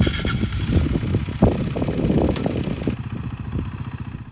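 KTM 390 Duke single-cylinder engine running through its stock exhaust with the factory dB killer in place. It makes a thin, scooter-like note that the owner calls wispy.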